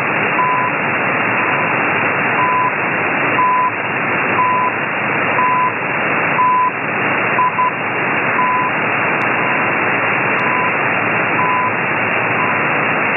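CHU Canada shortwave time signal on 7850 kHz: a short 1000 Hz beep once per second, one per second tick, over loud shortwave static. About seven and a half seconds in one tick is split into two quick beeps, and the last few ticks come through fainter.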